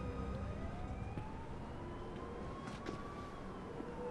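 Faint emergency-vehicle siren wailing in one slow rise and fall over a low city street background.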